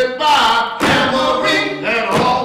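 Several voices singing a cappella in harmony, in short phrases that each start sharply and break off after under a second.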